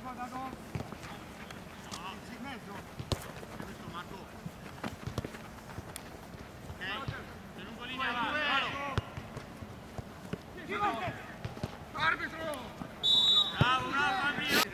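Players shouting to each other during a seven-a-side football match, with scattered thuds of the ball being kicked. Near the end comes a short, shrill referee's whistle blast.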